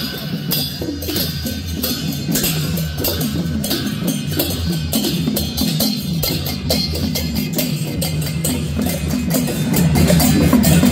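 Traditional Newar procession music: large brass hand cymbals clashing in a steady rhythm, about three strokes a second, over drumming.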